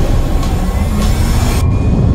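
Film sound effect of a starship passing through fire: a loud, deep rumble with rushing noise and music underneath. The high hiss drops away suddenly near the end.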